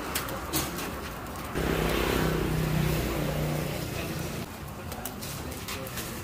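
Street-side flat-top griddle cooking with a few light metal spatula clicks. A low, pitched drone swells in about a second and a half in and fades after a couple of seconds.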